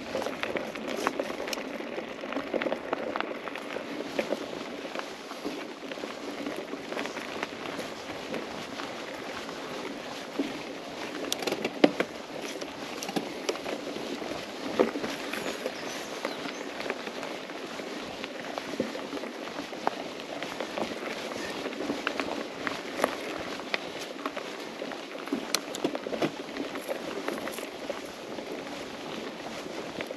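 Mountain bike rolling along a dirt singletrack: a steady crunch of the tyres on dirt and small stones, with frequent small clicks and knocks as the bike rattles over the ground. One sharper knock comes about twelve seconds in.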